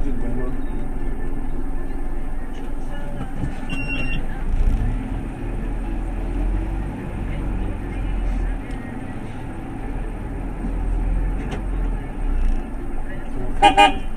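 A 30-seat bus idling with a steady low rumble, heard from inside its cab. Near the end a vehicle horn sounds two short toots.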